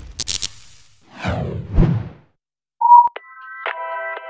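Logo-reveal sound design: a quick cluster of sharp clicks, then two swooshes about a second apart. After a short gap, a brief tone gives way near the end to bright electronic music with sustained chords and a soft beat.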